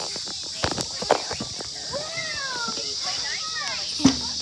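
Children's voices calling out with gliding, sing-song pitch, over a steady high hiss. A few knocks and rubbing sounds from the phone being handled against clothing, the loudest about a second in.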